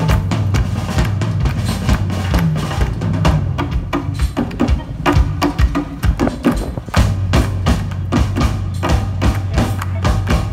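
Live band playing a percussion-heavy groove: drum kit and hand percussion keep a dense, even rhythm over a steady bass line.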